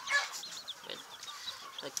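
ISA Brown chicks peeping: many short, high chirps in quick succession.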